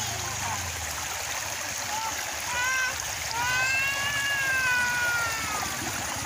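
Shallow stream running steadily over rocks, with children's high voices over it; one long high call carries through the second half.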